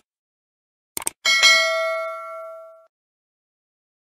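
Subscribe-button animation sound effect: two quick clicks, then a single bell-like notification ding that rings out and fades over about a second and a half.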